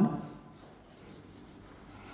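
Chalk writing on a blackboard: faint scratching strokes as a word is chalked up.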